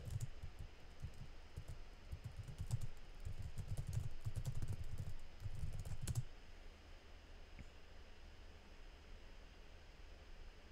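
Typing on a computer keyboard, in quick runs of keystrokes that stop about six seconds in.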